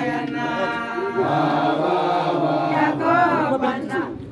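A group of voices chanting together in long held notes, with a rising and falling phrase near the end.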